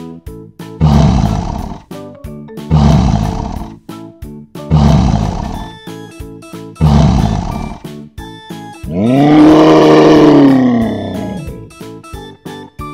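Lion roaring: four short, rough roars about two seconds apart, then a longer roar that rises and falls in pitch, over background music.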